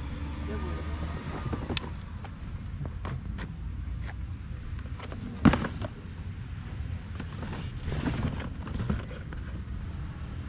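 Items being handled and shifted in cardboard boxes, with scattered small clicks and rustles and one sharp knock about halfway through. Wind rumbles on the microphone throughout, and faint voices are heard in the background.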